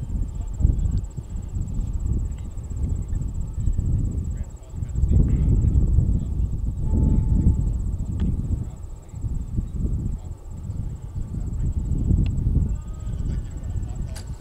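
Wind buffeting the microphone in uneven low gusts, with a faint steady high-pitched whine above it.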